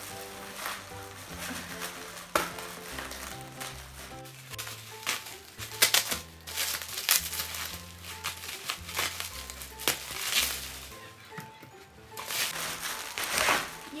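Clear plastic wrapping crinkling and rustling in irregular bursts as it is cut with scissors and pulled away. Background music with steady held notes plays underneath.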